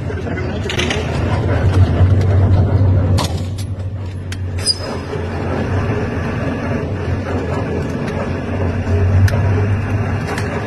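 Low, steady vehicle engine rumble heard from inside the vehicle, swelling slightly about two seconds in and again near the end, with a few sharp clicks and knocks.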